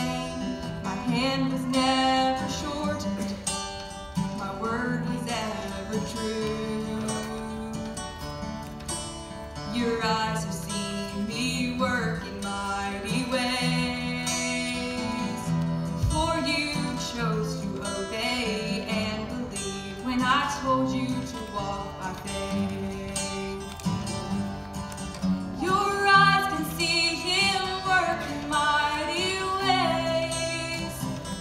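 A woman singing while playing an acoustic guitar.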